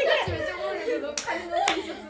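Several young women talking and laughing together, with two sharp hand claps about half a second apart in the second half.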